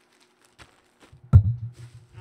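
Hands rummaging in a cardboard box packed with bubble wrap: a few light crinkles and clicks, then one loud thump a little past halfway with a short low rumble after it.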